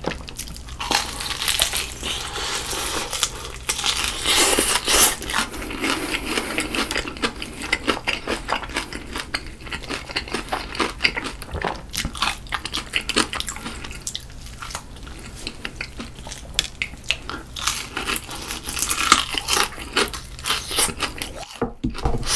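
Close-miked crunching and chewing of a crisp-battered fried chicken drumstick: a dense, continuous crackle of small crunches, with a short pause near the end.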